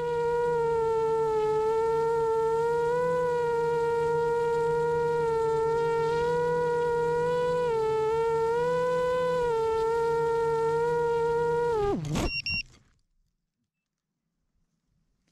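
Motors and propellers of an iFlight Chimera 7 long-range FPV quadcopter, a steady high buzz that rises and dips slightly with throttle in flight. About twelve seconds in the pitch drops sharply as the motors spin down on landing, followed by a few short high beeps.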